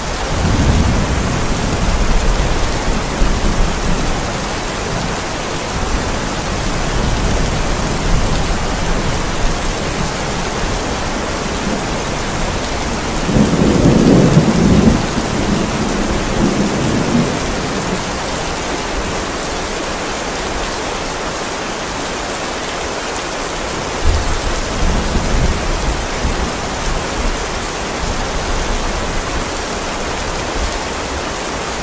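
Heavy rain falling steadily, with rolls of thunder: low rumbles in the first few seconds, the loudest one about halfway through, and a weaker one later on.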